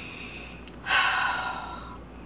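A woman's audible breath, starting sharply about a second in after a faint click and fading away over the next second.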